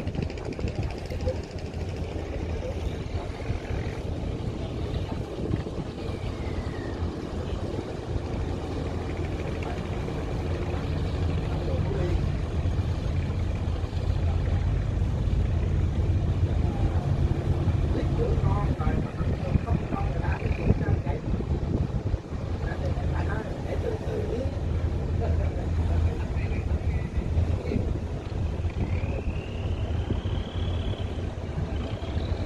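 Inboard diesel engine of a wooden fishing boat running steadily as it motors past at low speed, a low hum that grows louder toward the middle and eases off again, with voices faintly behind it.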